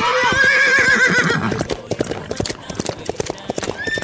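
Horse sound effect: a whinny, then quick clip-clop hoofbeats galloping.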